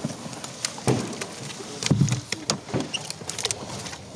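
Irregular knocks, cracks and clicks of a canoe being worked through dry reeds and fallen branches, wood and paddle knocking against the hull, with one louder thump about two seconds in.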